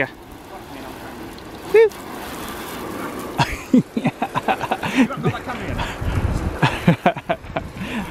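A garden hose spray gun jetting water onto a car's side panels and windows, a steady hiss of spray on wet paintwork. A brief voice sound comes about two seconds in, and low indistinct talk runs through the second half.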